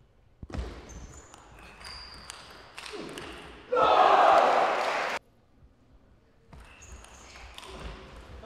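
Table tennis ball clicking off bats and table during a rally, with short shoe squeaks on the court floor. About four seconds in, a loud voice cry lasts about a second and a half and stops suddenly.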